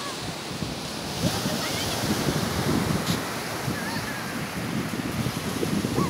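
Small waves breaking on a sandy beach, a steady rush of surf, with wind buffeting the microphone.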